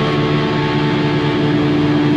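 Black metal recording ending on a distorted guitar chord left to ring: one steady, unbroken drone with a single held note strongest, with no drums or picking.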